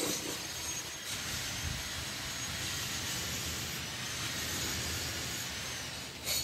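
Steady distant traffic noise: an even rushing hiss over a low rumble.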